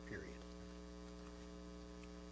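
Quiet, steady electrical mains hum in the sound system, a constant low buzz made of several fixed tones.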